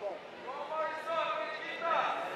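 Raised voices calling out in a large hall, a few drawn-out, fairly high-pitched shouts from about half a second in.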